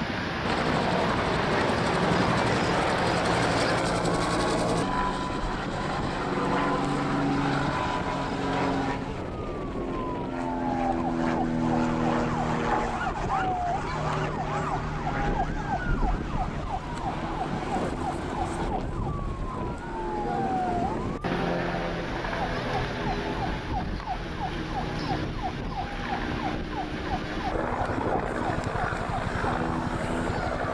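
Emergency-vehicle sirens sounding over engine noise: slow falling wails alternate with runs of fast yelping sweeps. The sound breaks off and changes abruptly a few times.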